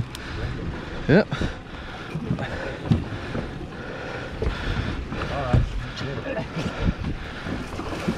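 Outboard boat motors running steadily at low speed, with wind on the microphone and a few light knocks on the deck.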